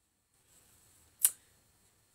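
A single sharp click about a second and a quarter in, over a faint hiss.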